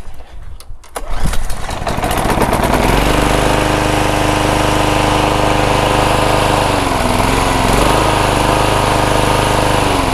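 A Hayter Harrier 41 lawnmower's Briggs & Stratton single-cylinder petrol engine is pull-started. It catches on a pull about a second in, picks up speed over the next two seconds and then runs steadily, with a brief dip in speed around seven seconds in. It starts now that its fouled spark plug has been cleaned of carbon.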